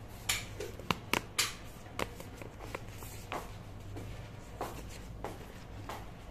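Seed packets and a plastic seed pouch handled by hand: a run of sharp crinkles and clicks, densest in the first second and a half, then sparser and softer.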